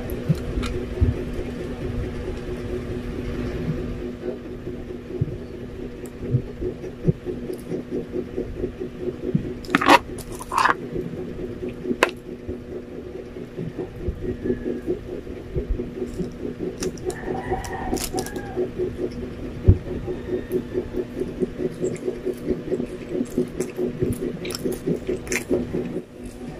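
Close-up eating sounds: a metal spoon clicking and scraping in a glass jar, then rhythmic chewing of a sandwich at about two to three chews a second. A steady low hum runs underneath.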